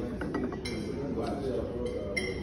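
A white ceramic cup clinking against its saucer as it is picked up: a few light clinks in the first half-second, with background voices.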